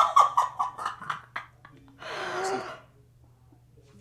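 A person's muffled laughter into cupped hands: a quick stuttering run of bursts over the first second or so, then one longer held cry about two seconds in.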